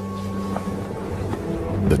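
Steady blowing wind over a low, held music drone.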